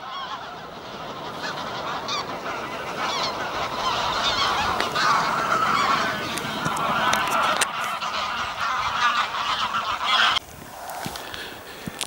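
A large flock of geese flying overhead, many birds honking at once. The calling swells toward the middle and cuts off abruptly about ten seconds in.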